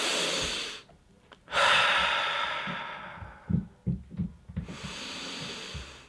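A man taking slow, deep breaths close to the microphone to calm himself: a short breath at the start, then a long one that fades out over a second and a half, then a softer one near the end, with a few faint low knocks in between.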